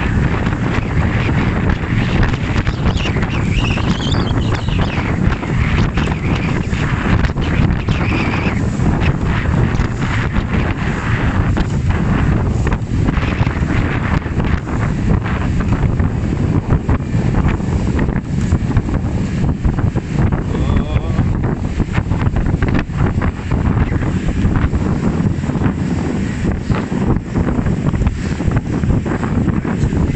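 Strong wind buffeting the microphone in uneven gusts, over the rush of choppy water.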